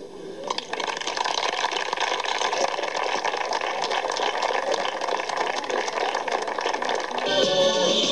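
Audience applauding, a dense, even clatter of many hands clapping. Near the end, music with singing starts.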